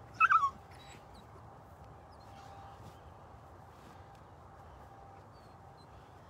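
A dog gives one short, high whimper that wavers and falls in pitch, right at the start.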